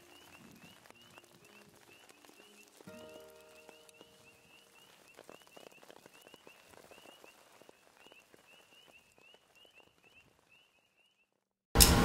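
Frogs calling in a faint chorus of short, high peeps, several a second, that stop near the end.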